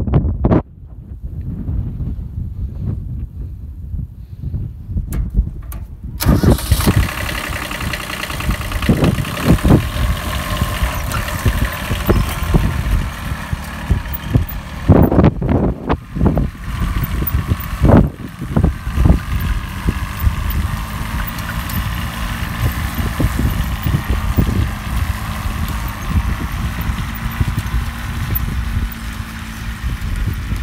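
Small compact tractor engine running, growing fuller and louder about six seconds in as the tractor pulls away across the field, towing a seed spreader.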